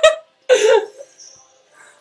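Women laughing, ending in one loud breathy burst of laughter about half a second in.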